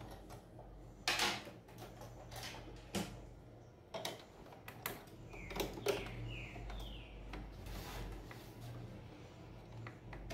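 Fabric being handled and fed under a sewing machine's presser foot: scattered soft clicks and short rustles over a low steady hum.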